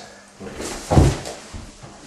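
A single dull thump about a second in, with faint rustling around it.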